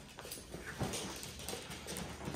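Small dogs scuffling at play on a hard laminate floor: faint, scattered clicks and taps of claws and paws.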